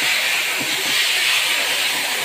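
A steady, even hiss with no breaks.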